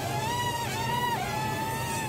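Hubsan X4 H107D+ micro quadcopter's motors and propellers whining in flight close by. The pitch dips about two-thirds of a second in and rises again as the quad is manoeuvred in to land.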